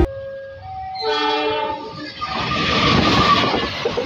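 Passenger train passing close by: a multi-tone horn sounds for about a second, then the loud rushing and rattle of the carriages' wheels on the rails.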